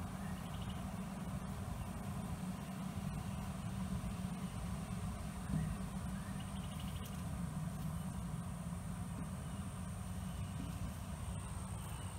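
Steady low rumble of outdoor background noise, with a faint steady high whine above it.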